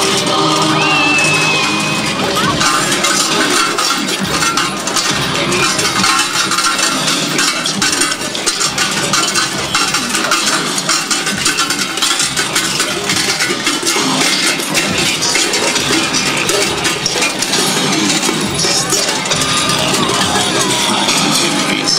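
Krampus costume bells jangling and clinking continuously, over loud music.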